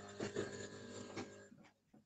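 Faint background noise over a video-call line, with a few soft short sounds, dropping out to silence about one and a half seconds in.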